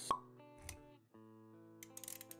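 Intro jingle for an animated logo: a sharp pop just after the start, a short low thump a little later, then held musical notes with a few light clicks near the end.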